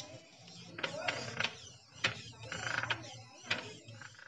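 Small servo gear motor of a homemade wire-legged walker robot running in reverse, a low whir of the gears with irregular sharp clicks.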